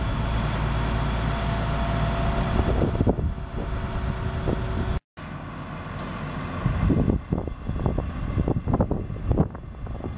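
A heavy diesel engine runs steadily: the Terex RT230 crane's Cummins 5.9-litre six-cylinder turbo diesel. About halfway through, the sound cuts off abruptly, then the engine returns quieter under a run of irregular knocks and thumps.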